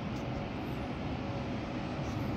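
Steady, even outdoor city hum with no distinct events, heard from high above the streets.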